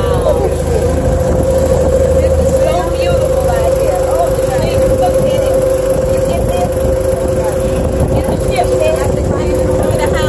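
A boat's motor runs underway with a steady hum that holds one pitch, over a low rush of wind and water. Faint voices come and go in the background.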